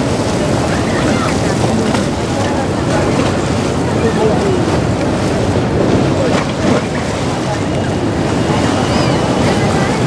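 Steady rushing noise of river water pouring through a barrage's open gates, with a crowd's chatter underneath.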